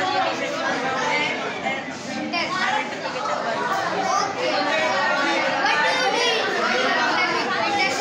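Speech only: boys talking back and forth, with other voices chattering behind them.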